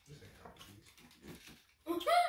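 Faint rustles and small clicks of foil candy wrappers being handled, with a voice cutting in at the very end.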